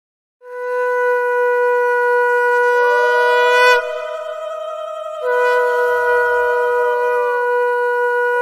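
Two conch shells blown in long, overlapping blasts at two different pitches. The higher note swoops up into place a few seconds in. The lower note breaks off just before 4 s and starts again a little past 5 s, so the sound never stops.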